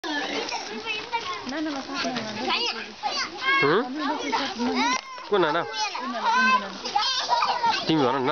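A crowd of young children at play, many high voices shouting and calling out over one another without a break.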